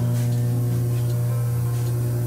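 Electrical transformer humming: a steady low hum with a row of fainter higher overtones.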